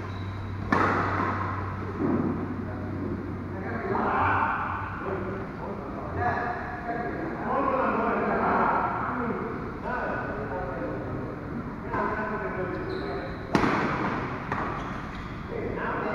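Badminton racket strikes on a shuttlecock in a hall, sharp smacks a few seconds apart, the loudest near the start and another near the end, with voices talking over them.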